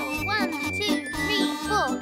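Kazoos buzzing a bouncy tune over a drum beat, as cartoon music.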